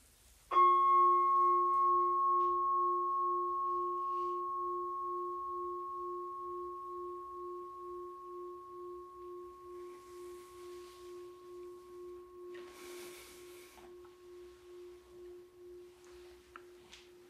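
A bowl-shaped altar bell struck once, its tone ringing on with a slow pulsing beat and slowly fading. It is the consecration bell marking the elevation of the host.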